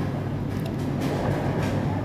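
Steady low hum and rumble of a busy food court's ventilation and background crowd, with a few faint clinks of cutlery against a bowl.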